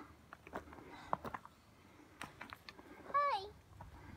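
Footsteps on a rocky, stick-littered forest trail, scattered light clicks and crunches. About three seconds in, a child gives a short high-pitched call with a wavering, falling pitch.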